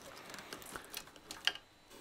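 Faint rustling and light clicks of a flat SCSI ribbon cable and its plastic connector being handled, with one sharper click about one and a half seconds in.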